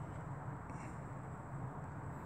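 Faint steady low rumble of outdoor background noise, with a thin high steady whine above it.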